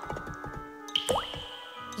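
Cartoon water-drip sound effect: a drop plinks with a quick upward-gliding pitch about a second in, over soft background music. It marks a tube leaking at its joint.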